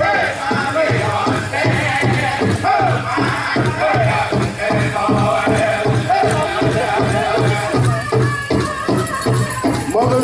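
Powwow drum group performing a grand entry song: the drum is struck in a steady, even beat, with singers' voices rising and falling above it.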